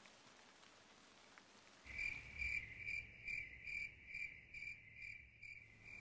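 Faint cricket chirping starts about two seconds in and repeats steadily, about two to three chirps a second, with a low rumble beneath it. It fades out just before the end.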